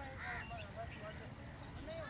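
Wild birds calling in short notes, about four a second, with an arched call just after the start, over faint distant voices.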